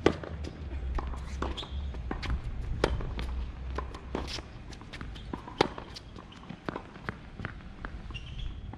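Tennis rally on a hard court: sharp pops of racket strings striking the ball, the loudest right at the start, again about three seconds in and again past the middle, with fainter ball bounces and the far player's hits between them. A brief squeak of a tennis shoe on the court comes once or twice.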